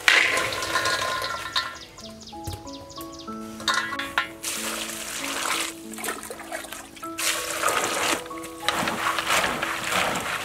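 In-shell peanuts poured from a woven basket into an aluminium bowl with a loud rush at the start. Then hands swish and rub the peanuts in water, washing them, in several noisy bursts over background music.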